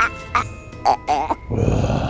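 A man's short, warbling, creature-like squeals and grunts, made as a haunted-house scare, over eerie background music. A louder low rumble sets in near the end.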